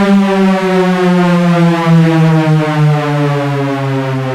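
One long synthesizer note with no beat under it, slowly sliding down in pitch: a beatless breakdown in a drum and bass track.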